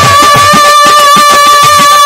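Bengali Baul folk music: one long, steady high note held over a fast run of hand-drum strokes.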